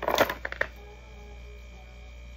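Jewelry clinking and rattling as a piece is dropped into a box and the pieces inside are rummaged, a quick cluster of small clicks in the first half second or so. A low steady hum remains afterwards.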